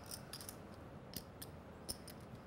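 Poker chips being handled at the table, giving a handful of faint, scattered clicks.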